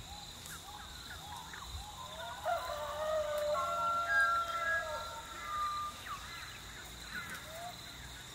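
Farm ambience: a steady high insect drone and short repeated bird chirps, with a rooster crowing once, a long drawn-out call starting about two and a half seconds in that is the loudest sound.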